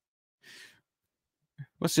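A man's brief, faint breathy exhale like a sigh about half a second in, close to the microphone; he starts speaking near the end.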